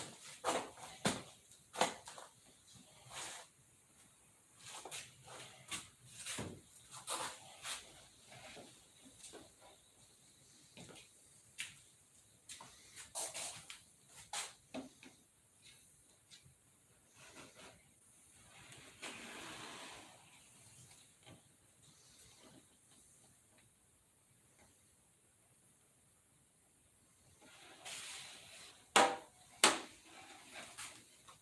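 Scattered light clicks, taps and rustles of hands working on a model airplane wing, with a brief longer rustle about twenty seconds in and a louder pair of knocks near the end.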